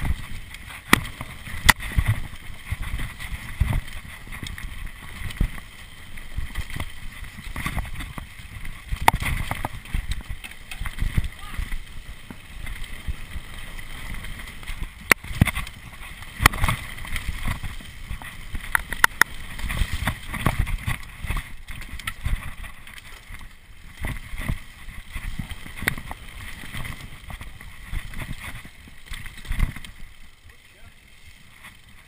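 Mountain bike descending a dirt forest trail at speed: rumble of tyres and wind on the camera's microphone, with frequent sharp knocks and rattles as the bike hits roots and bumps.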